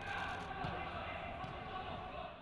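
Ambient sound of a football training session: faint voices of players and a few dull thuds of a football.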